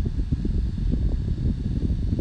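Steady low rumbling background noise with no speech.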